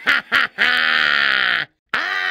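A person's voice making two short sounds, then one long drawn-out sound that stops abruptly.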